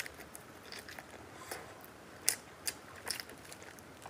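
Close-up chewing of crisp shaobing flatbread with egg, sausage and pork filling, with scattered sharp crunches and crackles; the loudest crunch comes a little past halfway.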